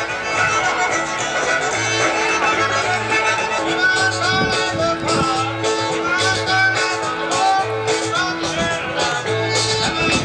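Bluegrass-style string band music with fiddle and guitar over a bass line that repeats in a steady rhythm.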